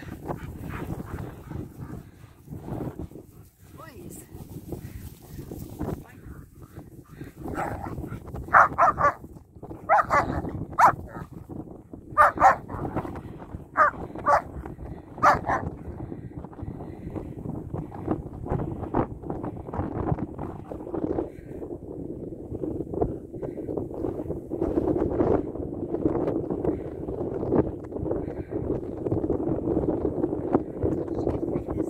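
German Shepherd dogs at play: a run of sharp, loud barks in the middle, then a steadier, lower play-growling while two of them wrestle.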